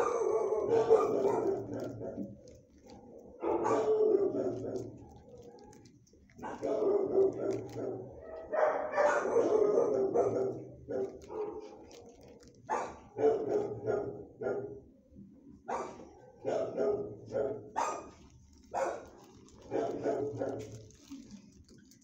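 Shelter dogs barking again and again, first in long overlapping runs, then as quicker single barks in the second half.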